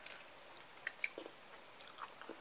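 Nearly quiet, with a few faint, short clicks and a soft low sound near the middle: quiet mouth sounds of someone tasting a piece of ripe tomato.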